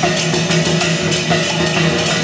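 Chinese dragon-dance percussion: a drum with cymbal clashes keeping a fast, steady beat, about three to four strikes a second.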